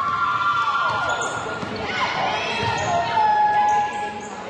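Basketball shoes squeaking on a hardwood court as players cut and stop, in long drawn squeals of a second or more, a higher pair in the first second and lower ones from about halfway through, with a ball bouncing on the floor.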